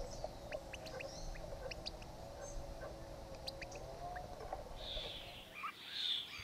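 European goldfinch at the nest: faint, short, high chirps scattered irregularly over a low steady hum, with a softer, rougher burst of high calls about five seconds in.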